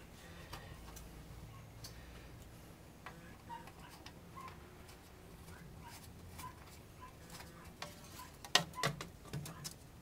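Faint small metal clicks and ticks as a screw is threaded by hand into a ceiling fan blade and its blade bracket, with a few louder clicks near the end as a screwdriver is put to it.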